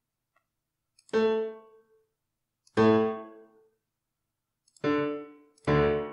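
Four single piano bass notes sounding one at a time, each ringing briefly and dying away, the last two close together near the end. They are the notation software's playback piano sounding each octave bass note as it is entered into the accompaniment.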